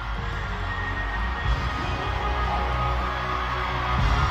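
Afrobeats concert music played loud over an arena sound system, with a steady bass line.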